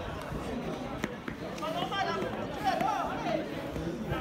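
Distant voices of players and spectators calling out across an outdoor football pitch, with a couple of short sharp thuds about a second in and again shortly after.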